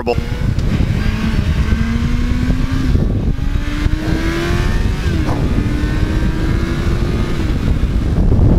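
A 2001 Yamaha FZ1's 1000cc inline-four engine accelerating through the gears. Its note rises steadily, drops at an upshift about three seconds in, rises again and drops at a second upshift about five seconds in. Wind rumble on the microphone runs underneath.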